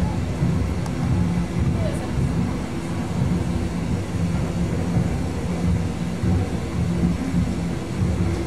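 Inside a moving car's cabin: a steady low rumble of engine and road noise.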